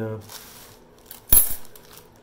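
A steel reciprocating-saw blade set down on a hard stone countertop: one sharp metallic clatter with a brief ring, about a second and a third in, after a short rustle of handling.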